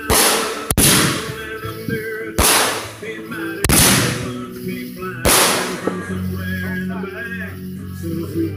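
Aerial fireworks bursting overhead: five sharp bangs in the first five or so seconds, unevenly spaced, then they stop. A song plays in the background.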